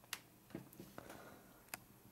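A few faint, sharp clicks at irregular intervals over a low steady hum.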